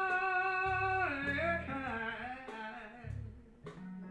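Blues-rock band playing live: a long held high note breaks about a second in into sliding, falling phrases over drums and a few cymbal hits, and the band drops quieter near the end.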